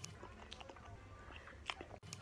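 Faint mouth sounds of a person eating ice cream: soft smacking and small wet clicks, with one sharper click near the end.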